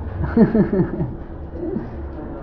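A person laughing: a quick run of about four short, falling-pitch laughs.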